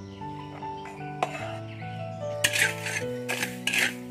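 Background music with steady notes throughout. From a little past halfway, dry rice grains are stirred and scraped with a spatula in a wok as they toast, in short repeated hissing strokes.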